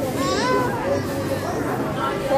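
A toddler's high-pitched voice, loudest about half a second in, over adult talk.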